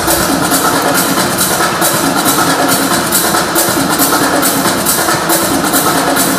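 Loud electronic dance music with a steady, even beat.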